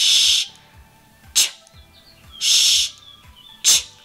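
A woman saying the speech sounds "sh" and "ch" in isolation, alternately, twice: a held "shh" hiss, then a short "ch", then another "shh" and another "ch". The pair shows the difference between the two: "sh" is air blown steadily through rounded lips, "ch" the same sound begun with a very quick "t".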